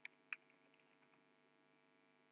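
Faint computer keyboard keystrokes over a steady low electrical hum: two sharp key clicks in the first half-second, then a few fainter ticks.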